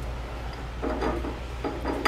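A man's voice speaking quietly in two short stretches over a low steady hum, with no distinct tool sound.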